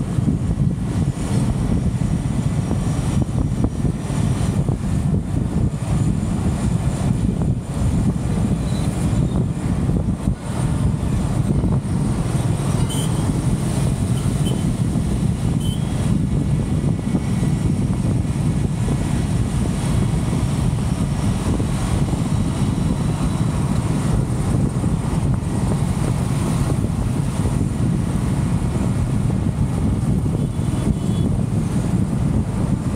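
Steady low rumble of wind on the microphone and road noise from a vehicle travelling along a highway.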